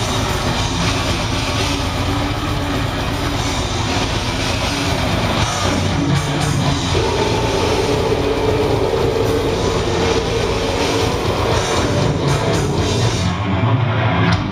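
Death metal band playing live, with electric guitars and a drum kit. About seven seconds in, a long held note comes in over the music.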